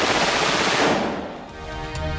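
A rapid burst of rifle fire into the air, loud and dense from the start and fading away over about a second and a half. A short music jingle comes in near the end.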